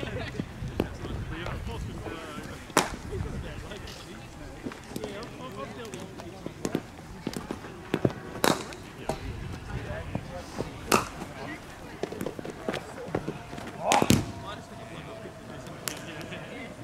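Sharp cracks of cricket bats striking balls in neighbouring practice nets, a handful of single hits spread out, the loudest near the end. Faint voices are in the background.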